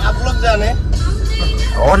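Steady low rumble of a small Suzuki hatchback's engine and tyres, heard inside the moving car's cabin under a voice and background music.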